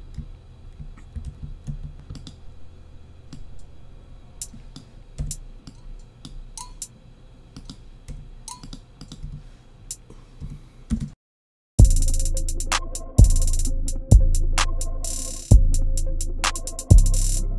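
Faint scattered computer mouse and keyboard clicks while MIDI hi-hat notes are edited. About twelve seconds in, after a brief silence, a programmed trap drum beat starts playing back: deep bass drum hits a little over a second apart under fast, rolling hi-hats.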